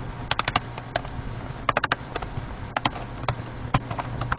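Small sharp plastic clicks and snaps as the memory compartment door on the underside of a Toshiba Satellite laptop is worked loose and pried off, some in quick bursts of three or four, others single, over a steady low hum.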